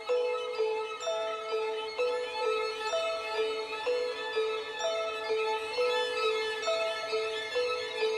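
Instrumental score music: a slow looping figure of high ringing notes, two or three a second, each dying away as the next begins.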